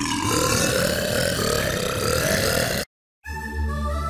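Tone2 Electra synthesizer playing its 'Burps' sample preset: a rough, dense chord made of recorded burps, held for about three seconds and then cut off. After a short silence, the synth's 'Choir' preset comes in as a sustained chord with a deep bass.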